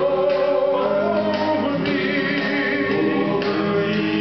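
Five-man southern gospel vocal group singing in close harmony into microphones, holding several notes together as chords.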